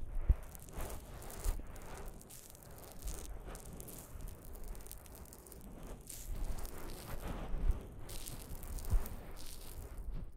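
Close-miked ASMR trigger sounds: irregular scratchy rustling and rattling at the microphone, with a few sharp handling bumps, the loudest just after the start and twice near the end.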